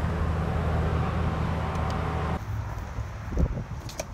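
Steady low outdoor rumble with a noisy haze over it, cut off suddenly about two and a half seconds in; after it, quieter handling sounds with a single loud thump near the end, then a click.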